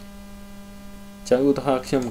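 Steady electrical mains hum in the recording, then a voice starts speaking about a second and a quarter in.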